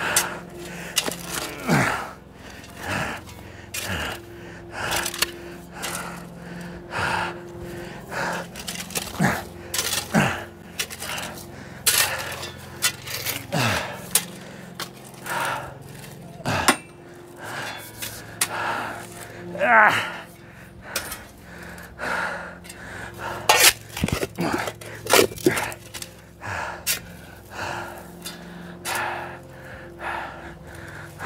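Metal shovel scooping and scraping through loose soil in a repeated rhythm of roughly one stroke a second, with occasional clinks of the blade on grit or stones.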